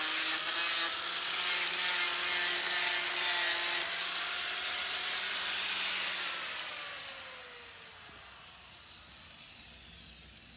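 Angle grinder with a sanding disc dressing down a fresh weld on an aluminium trailer I-beam. It is then switched off about six and a half seconds in and spins down with a falling whine.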